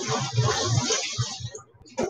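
Kitchen tap water running over a halved head of lettuce as it is washed, a steady rush of water that stops about one and a half seconds in.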